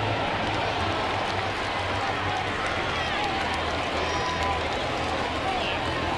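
Ballpark crowd noise: a steady din of many voices from the stands, with scattered voices faintly picked out.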